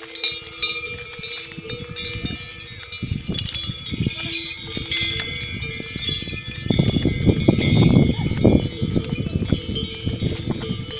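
Bells on a yak caravan ringing as the pack animals walk. A rough low noise rises alongside them and is loudest about seven to nine seconds in.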